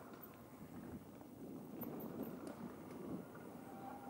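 Faint, uneven rolling noise of a mountain bike's tyres crunching over a dirt and gravel trail.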